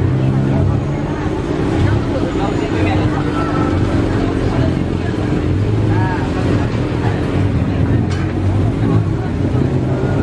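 Street market ambience: indistinct background voices over a steady low rumble.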